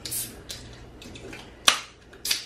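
Fingers working the pull-tabs of aluminium drink cans: a brief scratchy rustle at the start, then a single sharp click of a tab being pried open near the end.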